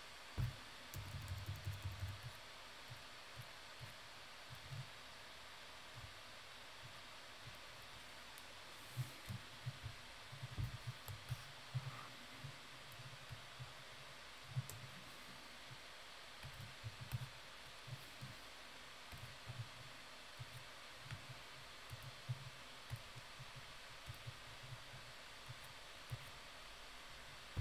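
Faint, irregular soft taps and clicks of hands working at a computer, with stylus strokes on a graphics tablet and key presses, over a steady low hiss.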